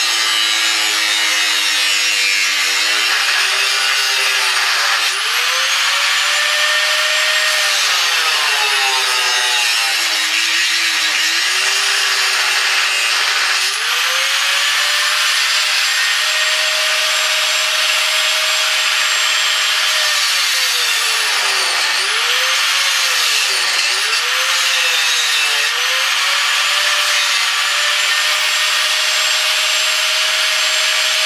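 Angle grinder with a cutting disc slicing through the metal mudguard bracket on a motorcycle's rear frame. It runs continuously, its motor pitch sagging and recovering again and again as the disc is pushed into the cut.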